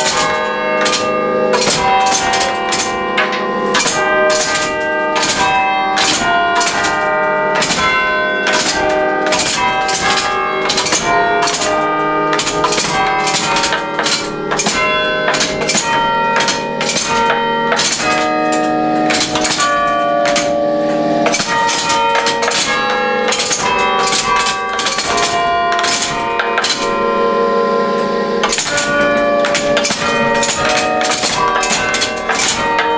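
Church bells struck in quick succession by the hammers of a pinned-barrel carillon machine, playing a tune. Each ringing bell note comes with the sharp clack of the machine's levers and hammers.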